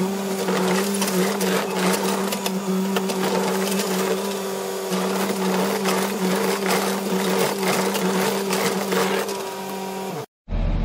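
Case compact track loader digging a footing trench: its diesel engine runs steadily at working speed with a constant drone, over a scatter of clanks and scrapes from the bucket and tracks working the dirt.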